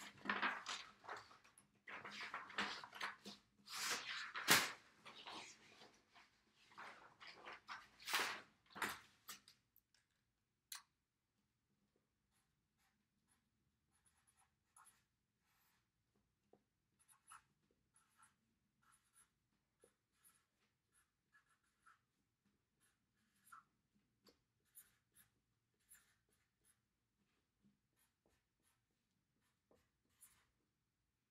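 Pen writing on a notebook page. The first ten seconds hold denser, louder scratching and paper handling, then only short, sparse strokes follow.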